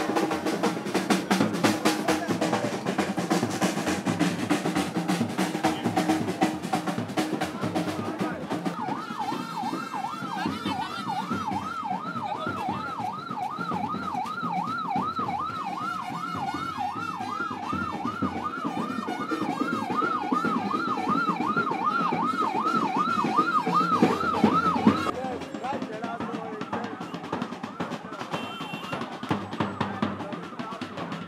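Procession drumming and band music, joined about nine seconds in by a fast warbling siren that sweeps up and down about two to three times a second over the drums. The siren cuts off suddenly a few seconds before the end, leaving the drumming.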